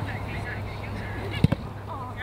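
Faint distant voices calling, with one sharp thud of a football being struck about one and a half seconds in.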